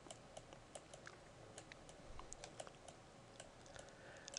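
Faint, irregular light clicks of a stylus tapping and sliding on a pen tablet during handwriting, over near-silent room tone.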